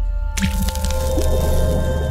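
Logo-sting sound effect: a low rumble under held musical tones, then a sudden wet splat a little under half a second in that rings on.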